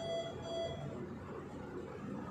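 Faint music of short electronic notes repeating about twice a second, which stops about a second in, leaving only low background noise.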